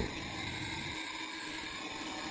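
Steady hiss of helium gas flowing into a large high-altitude balloon as it inflates.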